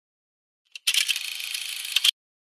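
Film-camera sound effect added in editing with a film transition: dead silence, a small click, then about a second of steady mechanical film-winding rattle that starts and ends with a sharper click.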